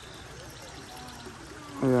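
Small garden stream trickling steadily. A voice says a word right at the end.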